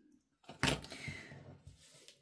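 Metal tweezers set down on a self-healing cutting mat with a single sharp click about half a second in, followed by a second of soft handling sounds of paper pieces being moved.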